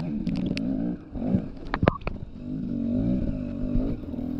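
Dirt bike engine revving up and down as it climbs rough ground. The throttle drops off about a second in and picks up again, with sharp knocks of rocks and the bike's chassis.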